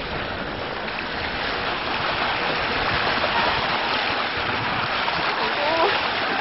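Steady rush and splash of choppy sea water, rising a little in level, with a faint voice starting right at the end.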